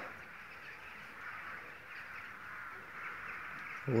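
Faint, steady background of distant birds calling, heard as one continuous chatter rather than separate calls.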